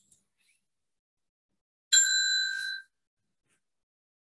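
A single bright bell-like ding about two seconds in, with clear ringing tones that die away within a second.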